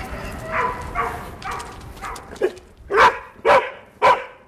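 A search-and-rescue dog barking repeatedly, about two barks a second, louder in the second half. This is a search dog's bark indication, the signal that it has found a hidden person and is staying at the spot where the scent is strongest.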